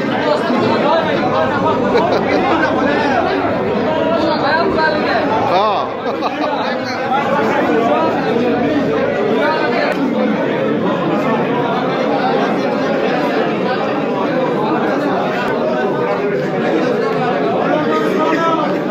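Many men talking at once: steady overlapping chatter of a crowded room.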